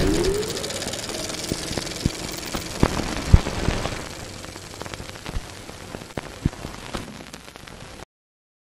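Designed sound effect of a channel logo animation: a short rising tone right after an opening hit, then a crackling hiss scattered with sharp clicks and pops that gradually fades away.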